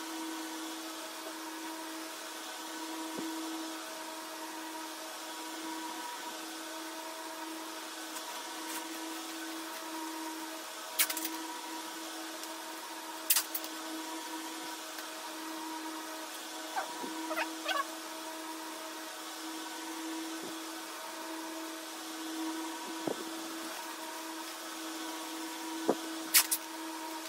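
A steady motor hum with a clear low tone, and a few brief sharp crackles of newspaper being handled as plant roots are wrapped for packing.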